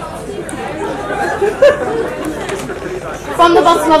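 Party guests chattering in a large room while the speech pauses, with the speaker's amplified voice coming back in near the end.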